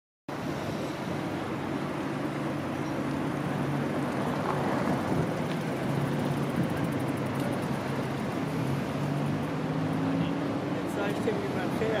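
Amphibious car's engine running steadily as it crosses the river, a low hum that wavers slightly in pitch. It starts abruptly just after the beginning.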